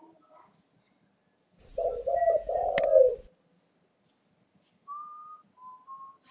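Spotted dove cooing: a burst of low, wavering coos lasting about a second and a half, cut by one sharp click. A couple of brief, fainter higher notes follow near the end.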